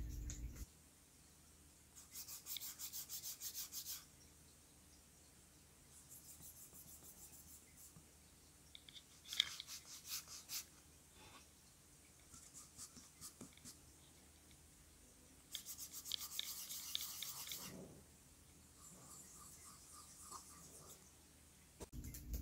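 A hand rubbing back and forth over the aluminium palm rests of a space grey 2020 MacBook Pro and a silver 2015 MacBook Air, in several short, faint bouts of quick strokes with pauses between. The two finishes sound different: the Pro's surface sounds as if it has a different kind of coating.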